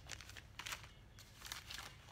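Faint crinkling of a clear plastic zip-lock bag as it is handled, a scatter of small soft crackles.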